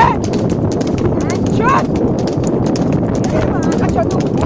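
Hooves of a buffalo trotting on a paved road, a quick run of clicks, over the steady rattle of the wooden cart it pulls.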